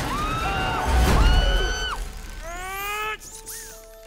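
Action film soundtrack: dramatic orchestral score with long, bending high notes and a heavy crash about a second in, the sound dropping away in the last second.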